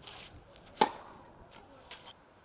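Tennis racket striking the ball on a serve: one sharp, loud pop a little under a second in. A short hiss comes just before the swing.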